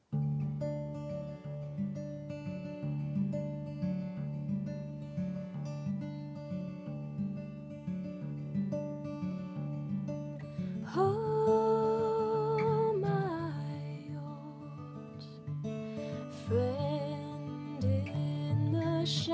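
Acoustic guitar starts playing the song's intro, plucked notes from the very start. A woman's voice comes in with a long held note with vibrato about eleven seconds in, and again briefly near the end.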